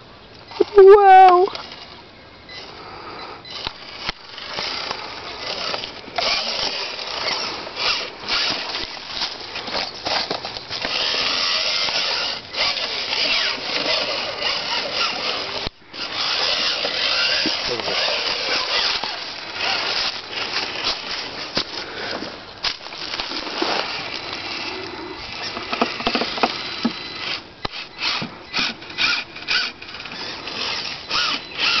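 Electric motor and geared drivetrain of a scale RC rock crawler whirring, rising and falling with the throttle as it crawls over rocks, and coming in short on-off spurts near the end. A brief wordless voice sounds about a second in.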